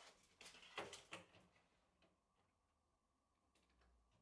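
Near silence: room tone, with a few faint short knocks or handling sounds in the first second and a half.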